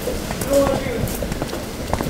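Quick, irregular footsteps of a person hurrying on foot, with a brief voice about half a second in.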